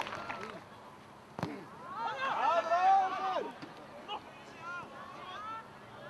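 Voices shouting and calling across a football pitch during open play, loudest in the middle, with one sharp thump just before them.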